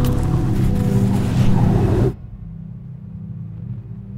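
Strong wind blowing, a loud rushing hiss over a low sustained music drone; the wind cuts off abruptly about two seconds in, leaving the quieter drone.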